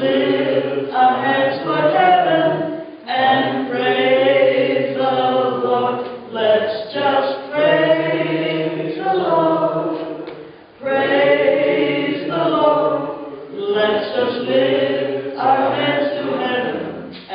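A woman singing a slow hymn unaccompanied into a microphone, in sustained phrases of a few seconds each with short breaks for breath.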